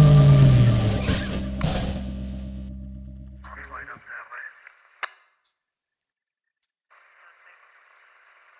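Electric guitar and bass of a funk-rock duo ending on a held chord that fades away over about four seconds, the bass sliding down in pitch. It gives way to a faint, thin radio-like voice, a single click, a couple of seconds of silence, and then a tinny radio hiss near the end.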